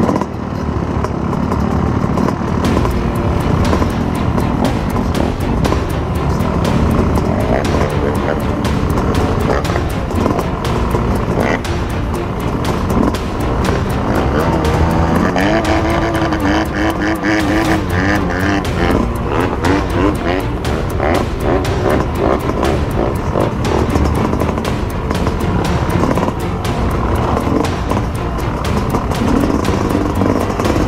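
Dirt bike engines running close by, the pitch rising and falling as they are revved near the middle.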